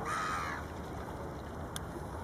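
A Canada goose gives one short honk, about half a second long, at the start. A faint click follows near the end.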